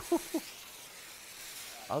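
Sizzling fuse of an on-screen cartoon bomb sound effect: a steady hiss that runs on until the blast goes off. A short laugh sits over the start of it.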